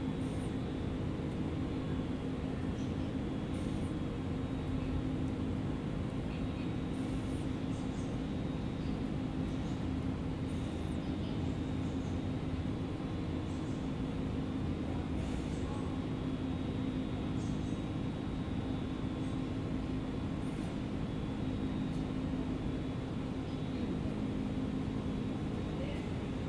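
Steady machine hum with several held tones, unchanging throughout. Faint, irregular light ticks are scattered over it, fitting pigeons pecking seed off concrete.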